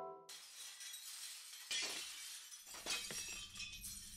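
A chiming, music-box-like melody breaks off and gives way to a crackling, shattering noise like breaking glass, with sharper cracks near the middle and again near the end. A low rumble comes in about two and a half seconds in.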